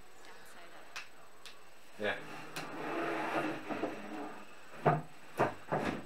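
Three sharp knocks about half a second apart near the end, as a wooden flat-pack desk cabinet is handled and bumped during assembly.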